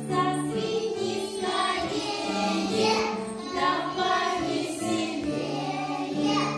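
A song with a group of voices singing over a steady accompaniment of long held notes.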